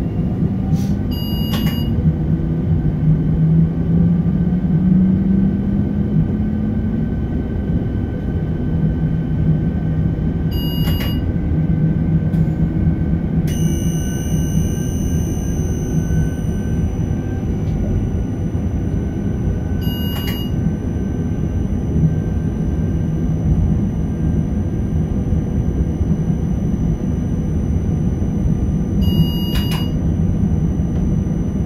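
Inside the driver's cab of a Škoda RegioPanter electric multiple unit moving off. There is a steady running noise, and the traction drive's hum rises in pitch over the first several seconds as the train accelerates. A short electronic cab beep comes about every nine seconds, and a thin high whine sets in about halfway.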